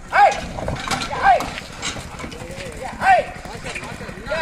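Hooves of a pair of oxen clopping on a dirt road as they pull a loaded bullock cart, under three short high calls that rise then fall, the loudest sounds, near the start, about a second in and about three seconds in.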